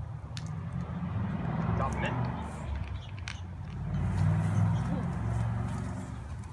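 Coke-and-Mentos geyser: carbonated cola foaming and spraying out of an opened Coca-Cola bottle after Mentos are dropped in, with a steady low rumble underneath and a few short clicks.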